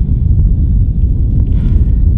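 Steady low rumble of wind on the microphone.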